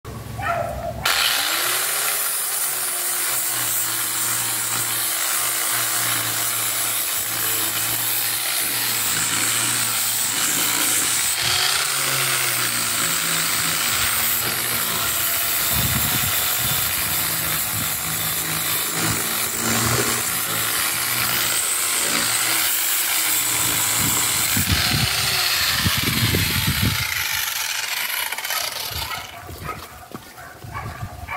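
Electric disc sander sanding the bare wooden hull of a canoe. It starts about a second in, runs steadily with its pitch dipping and recovering now and then as it bites into the wood, and winds down shortly before the end.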